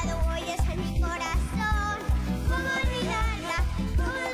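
Live cuarteto music: a boy's piano accordion and a singing voice over a band backing with a steady bass beat.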